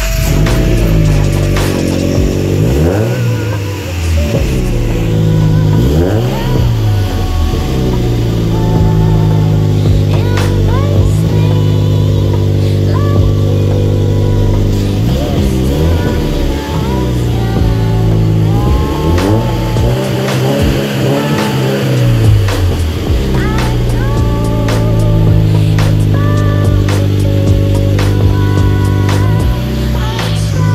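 Scion FR-S's flat-four engine idling and being blipped repeatedly, its pitch climbing and falling back about eight times, heard at the rear by the exhaust. Music plays underneath.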